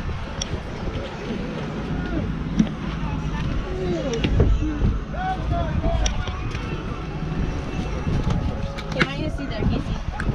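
Indistinct voices of several people chatting, over a steady low rumble, with a few sharp clicks.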